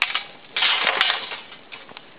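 Dry twigs snapping and crunching as they are broken and pushed into a burning twig stove. There are two sharp cracks about a second apart, with a burst of crunching between them.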